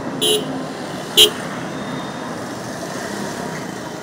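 Road traffic of motorcycles and cars running steadily, with two short horn toots about a second apart near the start.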